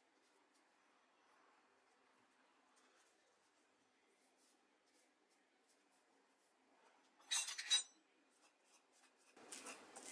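Near silence with faint handling ticks as ripe bananas are peeled by hand. About seven seconds in comes a short clatter, and just before the end a fork begins scraping and mashing banana on a ceramic plate.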